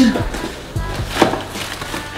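Light knocks and rustling as a black camera bag is picked up and handled, over background music; the sharpest knock comes a little past the middle.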